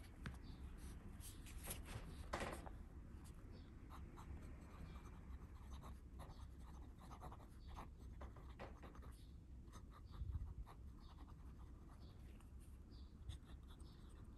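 Fountain pen with a 14k gold music nib writing on thin Tomoe River paper: faint, short scratches of the nib strokes. A steady low rumble runs underneath, and there is a soft thump about ten seconds in.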